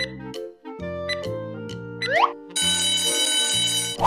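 Alarm-clock bell sound effect ringing for about a second and a half near the end, signalling that the quiz's answer time has run out. It plays over light children's background music and follows a short rising whistle-like glide about two seconds in.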